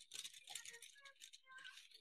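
Faint rattling and rustling of small metal items on a packaged card as it is handled, a quick run of light clicks and crinkles.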